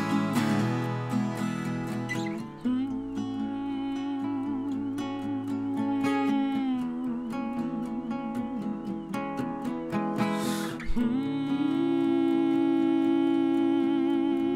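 Indie-rock song played live on two acoustic guitars, picked and strummed under a wordless sung vocal line, with a long held note in the last few seconds.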